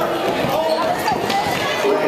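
A basketball being dribbled on a gym's hardwood court, a few bounces, over the chatter of a crowd of voices.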